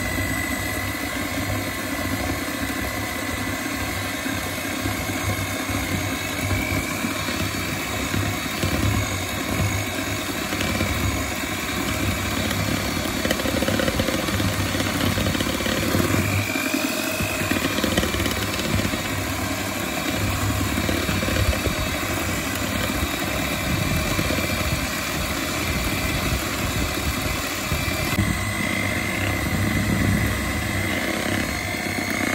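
Electric hand mixer running steadily, its twin beaters churning chocolate cake batter in a plastic bowl, with a steady motor whine.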